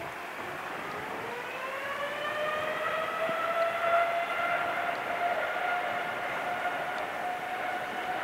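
Boeing 787-9's GEnx-1B turbofan engines spooling up for takeoff. The whine rises steadily over the first few seconds, then holds at takeoff thrust.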